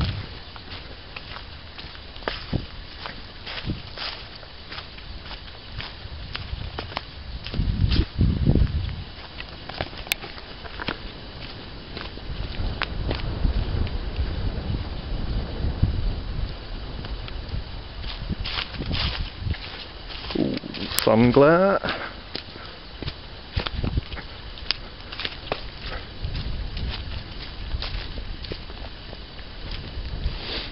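Footsteps on dry fallen leaves and bracken along a woodland path, a steady run of light crackling steps. Low rumbling noise on the microphone comes and goes, strongest about a quarter and a half of the way through.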